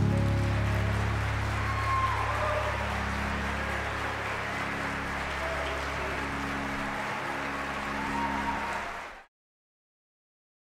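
Concert-hall audience bursting into applause with scattered cheers, over a low sustained instrumental note; the sound cuts off abruptly near the end.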